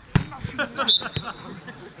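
A football struck by a player, a single sharp thump just after the start, amid men shouting on the pitch. A short whistle blast follows about a second in.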